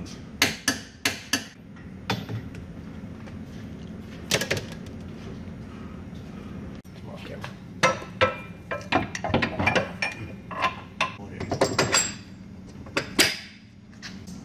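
Irregular metallic clanks and clicks of wrenches, bolts and steel control arms being handled and fitted into suspension brackets. There are a few sharp knocks in the first couple of seconds and a busier run of clanks in the second half.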